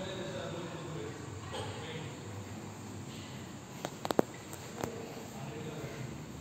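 Indoor room tone with faint, distant voices, broken about four seconds in by a quick cluster of four sharp clicks and one more click just under a second later.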